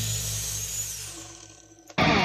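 Angle grinder winding down after being switched off: its whine falls in pitch and fades as the disc coasts to a stop, with a low throb that slows down.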